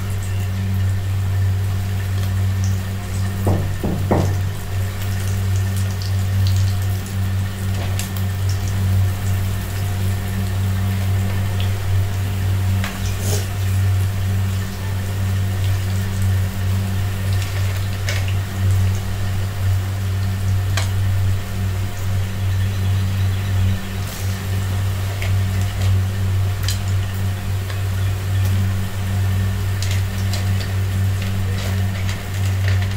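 Pakoda batter deep-frying in hot oil in a kadai, a steady sizzle and bubbling, under a loud steady low hum from a motor. A few faint clicks come and go.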